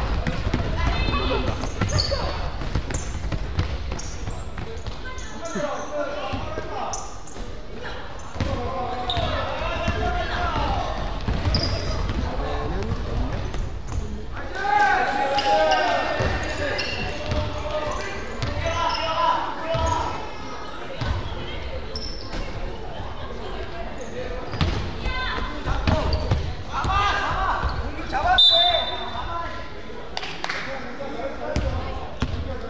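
Basketball dribbled on a hardwood gym floor, with players and bench shouting in a large gymnasium hall.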